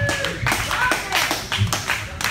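Scattered hand claps from a small audience, with a few voices, as the live band's music stops.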